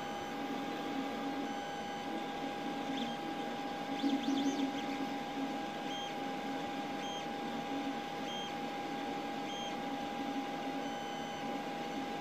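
Creality CR-X 3D printer running: a steady hum with a constant whine. Short high motor tones from the print moves recur about once a second in the second half.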